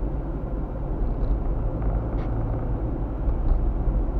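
A car driving, heard from inside its cabin: a steady low rumble of engine and tyre noise, with a few faint ticks in the middle.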